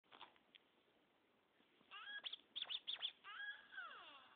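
A pitched sample scratched back and forth on a DJ scratch app. It starts with a few faint clicks, then sliding tones about two seconds in, quick chopped cuts, and a falling pitch slide near the end. The sound is thin and muffled, cut off in the upper range.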